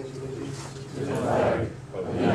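A roomful of people reciting the Pledge of Allegiance together in unison, growing louder about a second in.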